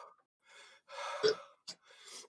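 A man gasping and breathing hard in pain from the burn of an extremely hot chili lollipop, one long breathy gasp about a second in.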